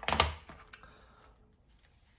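Hard plastic trading-card cases set down and stacked on a tile floor: a quick cluster of sharp plastic clicks in the first half-second, then one light click.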